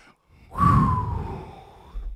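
One breathy burst of laughter, a long exhale starting about half a second in, falling slightly in pitch and fading away.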